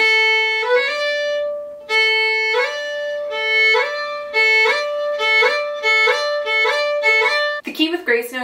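Solo fiddle playing a grace-note ornament drill: the open A string stepping up to the third-finger note, with the first- and second-finger grace notes flicked in super quick between them. It is played once slowly, then about seven times in a row, gradually getting faster.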